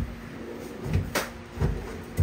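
Metal wire shelves being shifted in their runners inside an incubator cabinet, giving a few short clacks and knocks.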